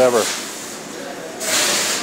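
A word of speech, then a short, even hiss of about half a second near the end, over a faint steady factory hum.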